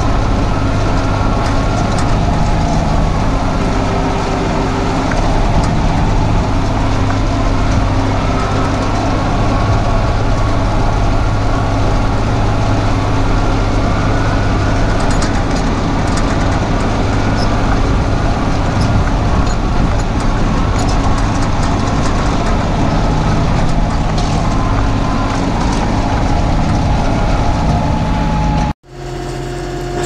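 A tractor's engine running steadily as it pulls a three-point broadcast seed spreader across a pasture. Near the end the sound cuts off abruptly and comes back quieter.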